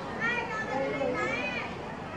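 High-pitched children's voices calling out twice among visitors, over a steady hubbub of background chatter.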